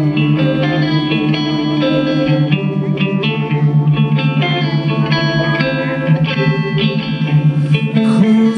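Live rock band playing an instrumental passage: an electric guitar run through effects, with chorus and some distortion, plays changing notes over a steady held low note.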